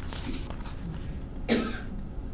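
A single short cough about one and a half seconds in, over low room noise.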